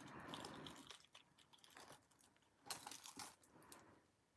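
Near silence with faint handling noise: soft rustling at the start and a brief cluster of light clicks about three seconds in, from a beaded necklace being picked up and moved.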